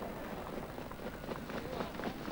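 Trotters' hoofbeats on the dirt track as a field of harness horses pulling sulkies passes close by, a few faint knocks a second, with voices in the background.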